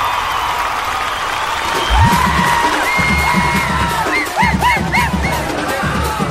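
A crowd cheering and whooping. About two seconds in, music with a pounding drum beat and high sliding, whistle-like tones comes in over it.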